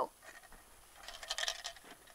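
Faint scraping and handling of an aluminium soda can against a wooden board, about a second in, as the shot can is picked up.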